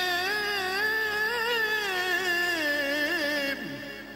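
A single voice singing a Middle Eastern-style melody in long, wavering, ornamented held notes. Near the end the phrase slides down in pitch and breaks off.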